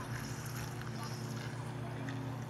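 A steady low hum, with faint voices murmuring in the background.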